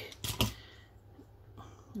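A few light clicks and knocks, about half a second in, from a small wooden thread spool and a wooden dowel being handled.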